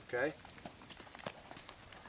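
A saddled horse's hooves stepping on dirt as it is led forward at a walk: a few faint, irregular footfalls.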